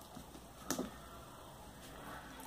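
Quiet room tone with one brief faint click about two-thirds of a second in, from hands working beads and nylon thread on a beaded sandal strap.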